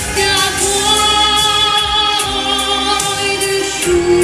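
A girl's solo voice singing long, held notes into a handheld microphone over a backing track with a steady beat.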